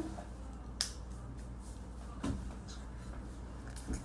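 A single sharp click about a second in, then a couple of faint knocks, over a low steady room hum.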